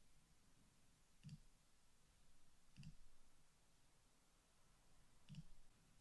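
Near silence with three faint computer mouse clicks, a second or two apart.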